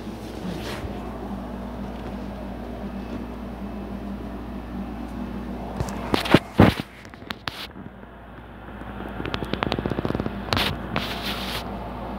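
A phone microphone being handled: sharp knocks and rubbing about halfway through, then a quick run of clicks and another knock, over a steady low hum.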